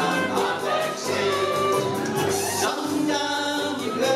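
Ukulele band playing live: strummed ukuleles over a bass guitar, with several voices singing together.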